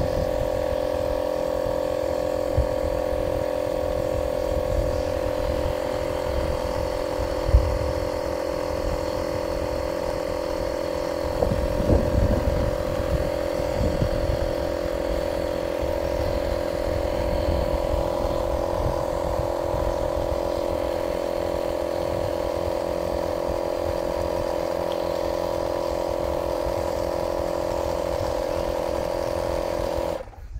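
Air compressor running steadily with a constant whine, pressurising the air-cannon launcher of a compressed-air rocket; it cuts off suddenly near the end. Gusts of wind rumble on the microphone underneath.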